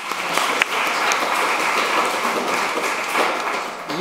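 Audience applauding steadily after a talk.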